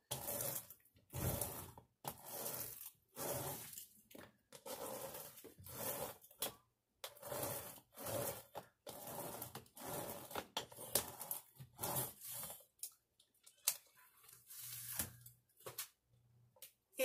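Hand roller (brayer) rolled back and forth over a diamond painting's rough drill surface, pressing it onto an adhesive-sprayed board: a run of short rough rolling strokes, about one or two a second, growing sparser near the end.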